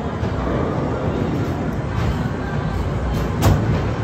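Arcade din: a steady low rumble of game machines with background music, and one sharp knock about three and a half seconds in.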